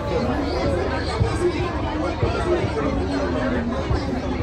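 People talking over the general chatter of a crowd, with voices overlapping and no pause.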